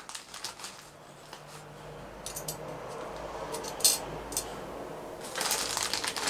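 Hands rummaging in clear plastic bags of small hardware: light clicks and clinks of small metal parts, with one sharper click about four seconds in, then the plastic bag crinkling more steadily near the end.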